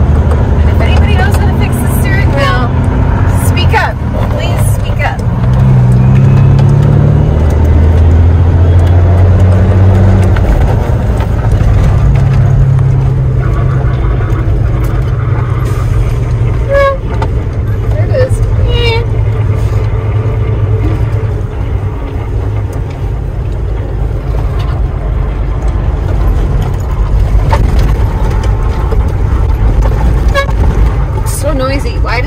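Semi truck's diesel engine heard from inside the cab as the truck drives off. Its low drone steps up and down in pitch through the gears, with a few short squeaks.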